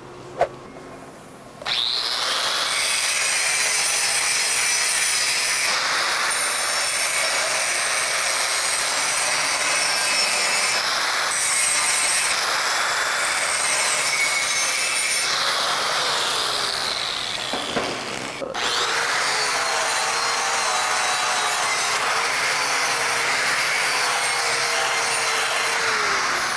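Angle grinder grinding a MIG weld on steel plate, starting after a click about two seconds in, easing off briefly around eighteen seconds and then grinding on. It is clearing the glassy silicon deposits from the toe of the root pass before the fill passes go in.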